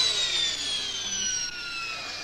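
High-speed motion-picture camera's motor whining as it winds down after a filming run: several tones falling slowly in pitch and fading.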